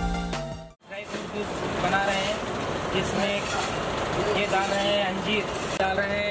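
Busy street ambience: a steady traffic hum with people talking in snatches, after background music fades out in the first second.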